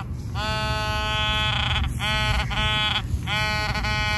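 Orange Garrett Pro-Pointer AT metal detecting pinpointer held in sand, giving a steady buzzing alert tone in three long stretches with short breaks. The tone signals a metal target close to the probe tip, here a buried coin.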